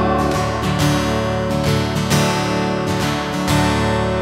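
Acoustic guitar strummed in a steady rhythm, its chords ringing on between strokes.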